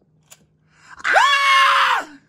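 Interactive toy unicorn letting out a loud squealing cry about a second long, starting about a second in with a quick upward swoop and then slowly sagging in pitch: its 'mad' mood reaction.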